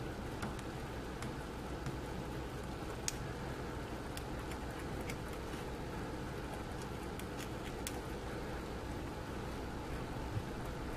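Hobby knife blade scraping mold lines off a metal miniature: faint, scattered small scratches and clicks, one a little sharper about three seconds in, over a steady low room hum.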